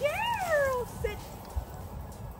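A dog whining: one high drawn-out whine that rises and then falls in pitch, followed by a short yip about a second in.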